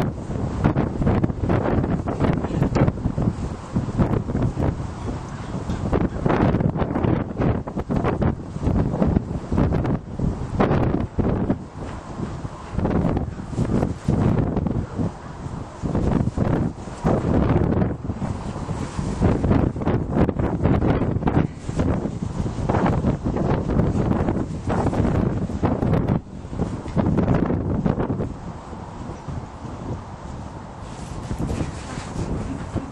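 Wind buffeting the microphone: a loud, low rumbling noise that surges and eases in uneven gusts.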